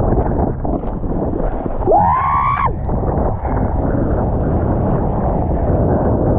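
Wind buffeting a close-mounted action camera's microphone while kitesurfing, with the board rushing and splashing over choppy water. About two seconds in, a short high-pitched whoop cuts through.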